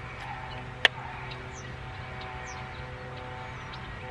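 A single sharp click about a second in as the film tab of a Polaroid Land Camera pack-film camera is handled, over a faint steady hum.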